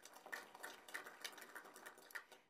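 Light, scattered applause from a seated audience: a faint patter of many hands clapping that swells about a third of a second in and thins out near the end.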